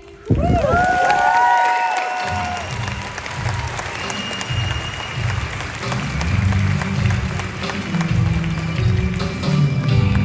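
Crowd applauding and cheering with a few high whistles, starting suddenly. About two seconds in, music with a steady beat starts over the arena's loudspeakers and carries on under the applause.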